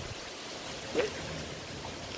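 Quiet, steady outdoor background noise with no clear source, and one brief short voice-like sound about a second in.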